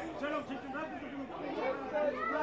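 Indistinct voices of several people at a football ground, calling out and talking with no clear words, at a moderate level.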